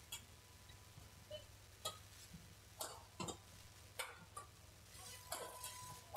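Badminton rally: rackets striking the shuttlecock, a series of about seven sharp clicks at an uneven pace, roughly half a second to a second apart.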